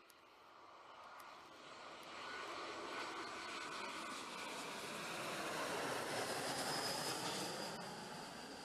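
Airbus A321 jet airliner on final approach with gear down, passing low overhead. Its jet engine noise swells to its loudest about six to seven seconds in, with a steady high whine, then starts to fade as its pitch drops.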